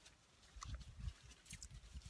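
Faint mouth sounds of a person chewing on a strip of cedar inner bark to moisten its fibres for cordage: a scatter of small wet clicks and soft thumps from about half a second in.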